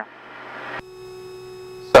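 A faint hiss, then about a second in a steady electronic tone with many overtones comes on suddenly. It holds level and ends in a sharp click as speech resumes.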